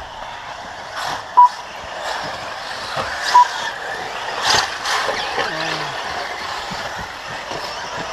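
RC buggies racing on a dirt track: a steady whir of motors and tyres with scattered knocks. Two short high beeps sound, about a second and a half in and again two seconds later.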